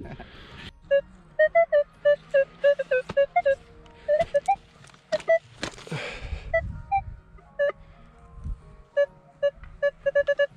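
Metal detector giving a string of short, low-pitched beeps as its coil is swept back and forth over a target in the soil: a dull signal. About six seconds in, a shovel scrapes and thuds into the earth.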